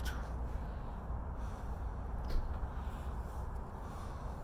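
Steady low rumble and hiss of outdoor background noise on a handheld phone microphone, with one brief click a little over two seconds in.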